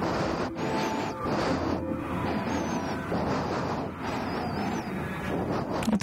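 A rushing, wave-like noise that swells and fades, with a few faint high wavering chirps over it.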